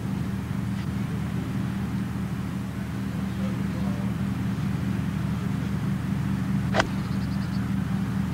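A single sharp crack of a golf iron striking the ball from the fairway, about seven seconds in, over a steady low hum.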